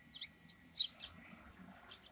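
Small birds chirping faintly: a few short, high chirps, each sliding downward, spread through about two seconds.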